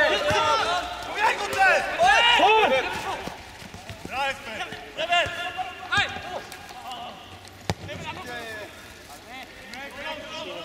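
Footballers shouting calls to each other across the pitch, loudest in the first few seconds and then in shorter, sparser shouts. A single sharp thump of a ball being kicked comes about three-quarters of the way in.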